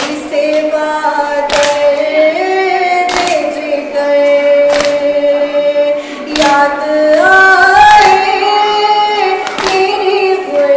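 A woman singing a noha, an Urdu lament, unaccompanied, in long held notes that glide between pitches. A sharp chest-beating strike (matam) keeps time about every second and a half.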